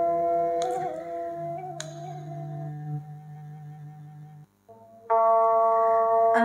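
Instrumental accompaniment for a chèo song, with long held notes rich in overtones and two sharp clicks about one and two seconds in. It fades and drops out briefly about four and a half seconds in, then resumes louder about a second later.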